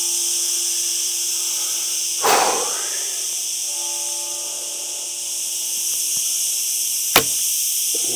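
Shot from an AF Archery Jebe Gen 2 Mongolian Yuan-style laminated bow: one sharp crack of the string on release about seven seconds in. A steady insect chorus hisses throughout, with a brief rustle about two seconds in.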